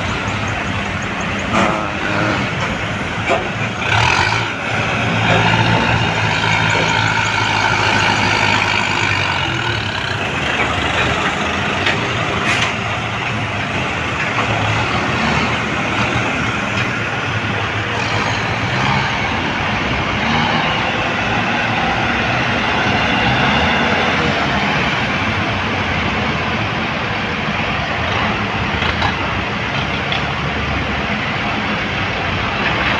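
Diesel engines of Kubota farm tractors and other heavy equipment running steadily as a slow convoy passes close by, with their road and engine noise overlapping.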